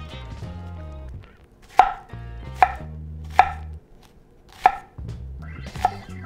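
Chef's knife chopping an onion on an end-grain wooden cutting board: about five separate knife strikes, spaced roughly a second apart, beginning a little under two seconds in.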